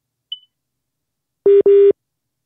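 Telephone line tone heard over the line during a phone call: two loud beeps of a steady low tone in quick succession, about one and a half seconds in, preceded by a faint, brief high blip.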